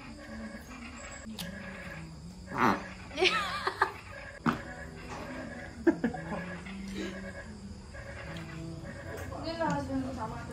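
Short, bending bursts of a person's voice, like laughing or exclaiming, about two and a half seconds in and again near the end, with a few sharp clicks and faint background music.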